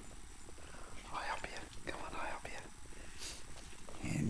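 A person whispering: a few short, soft, breathy phrases with no full voice.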